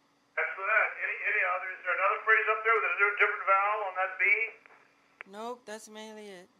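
Vocal exercise: a thin, telephone-band voice vocalizes in quick pitch-bending runs for about four seconds. Near the end, a fuller voice answers with two short sung notes.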